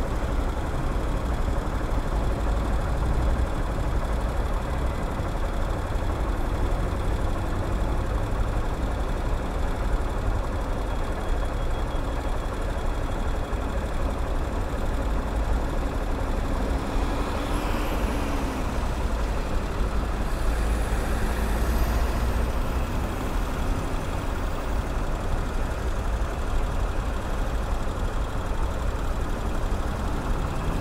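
A Honda NXR 160 Bros single-cylinder motorcycle engine idling steadily while the bike waits at a junction, with surrounding city traffic running. A faint high squeal rises about two-thirds of the way through.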